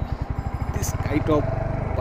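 Royal Enfield Hunter 350's 349 cc single-cylinder engine running at low speed as the bike rolls along, with an even, low exhaust beat.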